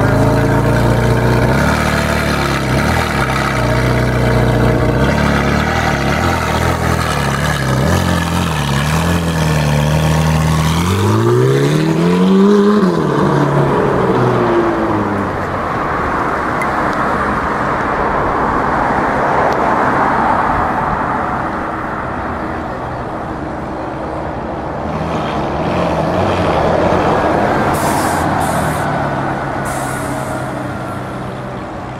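Ferrari 458 Italia's V8 idling with a few small throttle blips, then revved once hard, the pitch rising and falling back about eleven to fourteen seconds in. After that the engine note gives way to a steadier, rougher rush of engine and street noise.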